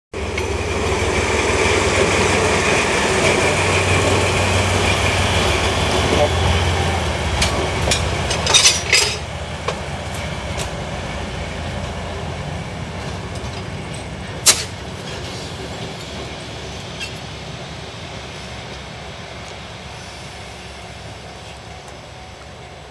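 DE10 diesel-hydraulic locomotive running slowly past and moving away, its diesel engine loud at first and then fading steadily. A few sharp clacks come from the running gear over the track about eight or nine seconds in, with one more near the middle.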